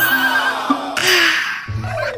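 A comic sound effect, a wavering animal-like call that falls in pitch, played over upbeat children's background music.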